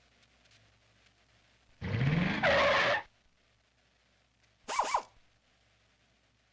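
Car sound effects: an engine-like rev rising in pitch for about a second, starting about two seconds in, then a brief tyre squeal near five seconds.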